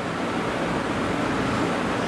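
Steady background noise with no distinct event: an even rushing hiss of room or microphone noise.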